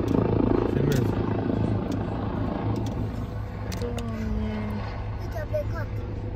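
Low-flying rescue helicopter's rotor, heard from inside a car cabin over the car's steady low rumble.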